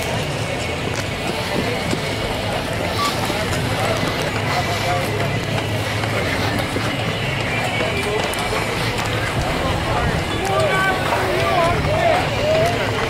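Indistinct chatter of skiers and snowboarders in a chairlift line, over a steady low hum. The voices grow busier near the end.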